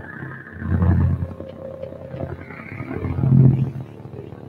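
Live electronic music from laptops and a hand controller: two deep, swelling low sounds, about a second in and again near the end, with a thin high tone above them early on and a higher tone rising and falling in between.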